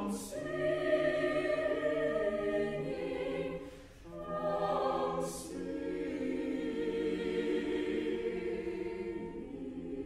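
Choir singing in slow, sustained harmony, with a brief pause for breath about four seconds in, then a long held chord that slowly fades.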